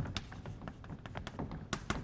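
Chalk writing on a blackboard: a run of short taps and light scrapes as the letters are formed, with one sharper tap near the end.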